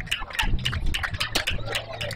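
Indistinct spectators' voices chattering and calling, with scattered clicks and a low rumble of wind on the microphone.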